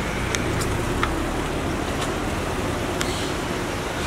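Steady street traffic noise from passing vehicles, with a few faint clicks.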